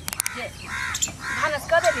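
Talking voices with a crow cawing in the background.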